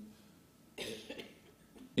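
A single short cough about a second in, between quiet stretches.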